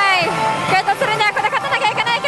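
Pachislot Hokuto no Ken Tensei no Shou slot machine playing its battle-sequence audio: dramatic character voices that swoop up and down in pitch over music.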